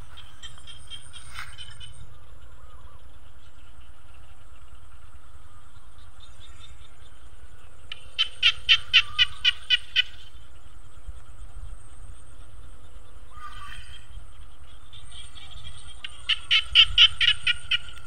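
Small frogs (khiat) and frogs calling: trains of rapid pulsed calls, about five pulses a second, loudest in a two-second run about eight seconds in and again near the end, with fainter calls between, over a low steady rumble.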